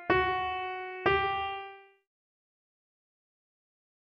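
Two single piano notes from FL Studio Mobile's piano roll, struck about a second apart, each ringing and fading away; the second is slightly higher, as the top note (G) of a C minor chord is placed. Silence follows for the last two seconds.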